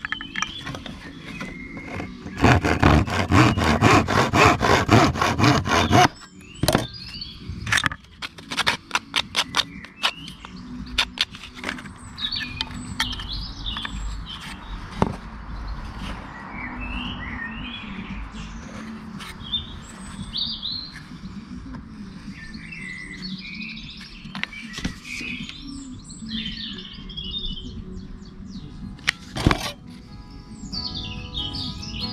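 Hand tool working a small softwood strip: a loud run of fast, rasping strokes lasting about three and a half seconds near the start, then a scatter of sharp clicks and taps. Birds chirp through the rest, over faint background music.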